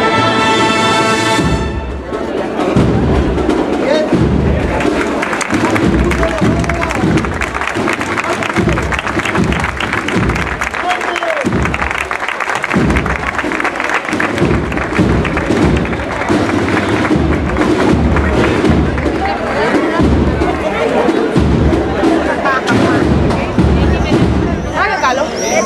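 Processional marching band: a held brass chord ends about a second and a half in, then a dense clatter of drums with low thumps carries on under crowd voices.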